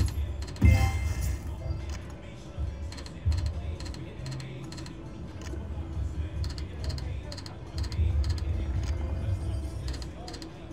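Video slot machine sounds: rapid regular ticking of the spinning reels over a low, pulsing electronic game soundtrack, with a loud burst under a second in as a lit dynamite symbol lands.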